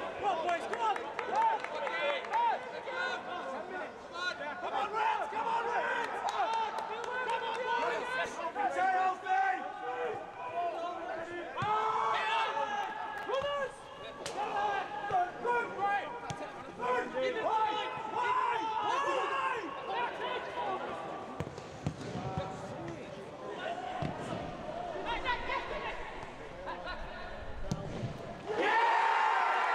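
Footballers shouting and calling to each other on the pitch with no crowd noise, broken by the thuds of the ball being kicked.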